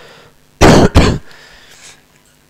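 A man coughing and clearing his throat: two harsh bursts close together, about half a second in.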